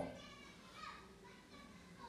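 Near silence between sentences, with faint distant voices curving in pitch in the middle of the pause.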